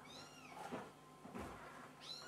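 A cat's faint high-pitched meow, rising and then falling, lasting about half a second at the start, followed by a couple of soft rustling knocks.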